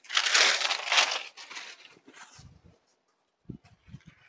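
Loud crinkling rustle of a saree being handled and unfolded, strongest in the first second and a half, then a few soft low thumps.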